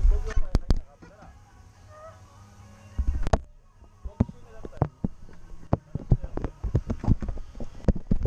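Irregular knocks, thumps and clicks on a racing kart's chassis as it is handled, picked up by a camera mounted on the kart: heavy thumps in the first second and again just after three seconds, then a quicker run of sharp clicks and knocks.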